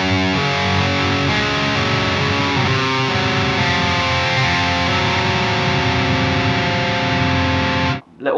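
Distorted electric guitar picking the notes of chord shapes one string at a time. Each note is left ringing, so the notes blend together into a sustained wash. It starts and stops abruptly.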